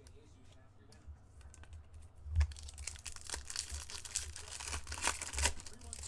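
Foil trading-card pack being torn open and crinkled by hand: quiet at first, then a sharp click about two and a half seconds in, followed by steady crackling and tearing of the wrapper until the end.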